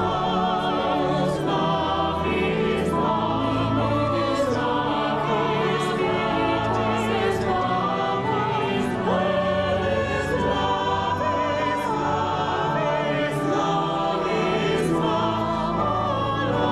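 Mixed choir singing in several parts with vibrato over sustained organ chords, with crisp sibilant consonants sung together at intervals.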